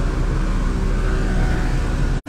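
Steady low engine rumble from motor vehicles running near the roadworks.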